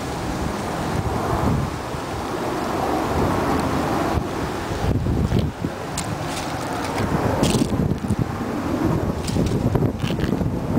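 Wind buffeting the camera's microphone in an uneven low rumble, with a few short crackles about five to eight seconds in.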